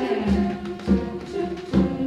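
Girls' treble choir singing with piano accompaniment, low notes pulsing about once a second.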